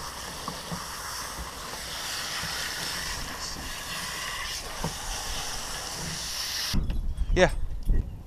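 Garden hose spray nozzle hissing steadily as it sprays water onto a wet dog's coat, cutting off suddenly near the end when the nozzle is released.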